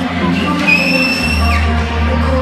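Loud music with sustained deep bass notes, the bass note changing a little past the middle. A little under a second in, a high whistle-like tone holds for almost a second and ends in a quick downward slide.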